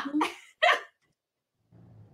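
A woman finishes saying "thank you so much" and blows a short, loud spoken kiss, "mwah". A faint low hum comes in near the end.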